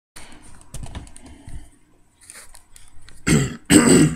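A man coughing twice near the end, two short loud coughs, after a few light clicks and knocks of handling.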